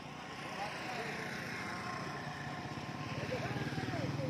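Massey Ferguson 240 tractor's three-cylinder diesel engine idling steadily, getting louder near the end as the engine side comes close.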